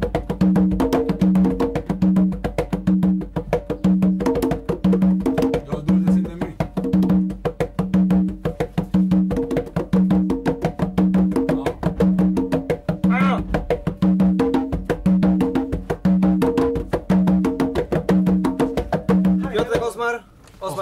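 Two congas played together in a fast, steady rhythm: rapid hand strokes, with a low open tone recurring about once a second and higher tones between.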